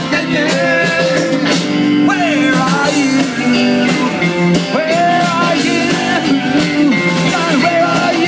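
Live blues-rock band playing: guitar and a steady rhythm with singing over it, notes bending up and down.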